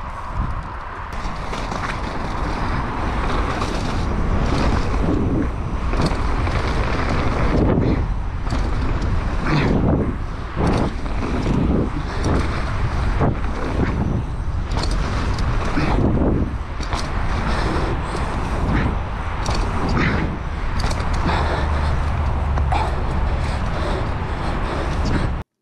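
Mountain bike riding fast down a dirt trail, heard from a camera on the rider: wind buffeting the microphone over the rumble of tyres on loose dirt, with the bike knocking and rattling irregularly over bumps and landings.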